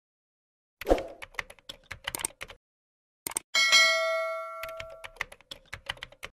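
Subscribe-button animation sound effect: a quick run of clicks like typing or mouse clicks, then a bright bell ding about three and a half seconds in that rings out for over a second, followed by a few more clicks.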